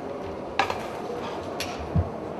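Light kitchen clatter over steady room noise in a hall: a sharp click about half a second in, a fainter click a second later, and a low thump near the end.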